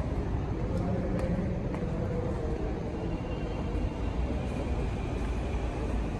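Steady low rumble of bus-station background noise, with a faint steady high tone entering about halfway through.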